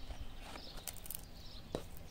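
Hands handling a cardboard card box and its booklet: a few light clicks and taps around the middle, then a sharper knock near the end.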